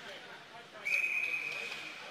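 Referee's whistle blown in one steady, high, long blast starting about a second in, over faint ice-rink background noise.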